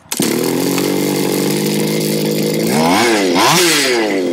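A 31cc Go-Ped's small two-stroke engine starts suddenly and settles into a steady idle, then is revved twice near the end, the pitch rising and falling with each throttle blip. The owner reports a slight bog at low revs.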